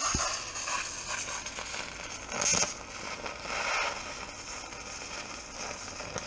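Electric welding arc striking and running as a bead is laid: a steady crackling hiss that starts suddenly, with a louder surge about two and a half seconds in.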